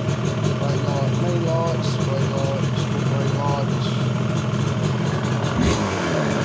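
Yamaha RD350 LC YPVS liquid-cooled two-stroke parallel twin idling steadily, freshly put back together and running on a temporary fuel supply.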